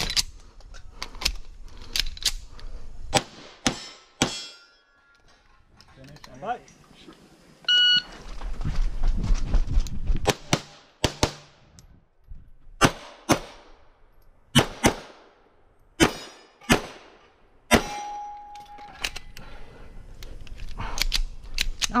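Grand Power X-Caliber 9mm pistol fired in fast strings of shots, about twenty in all, with a pause of a few seconds in the middle. A short ringing note sounds twice between the strings.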